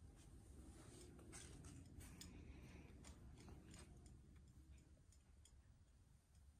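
Near silence: room tone with faint scattered clicks and rustles, thickest in the first few seconds and thinning out toward the end.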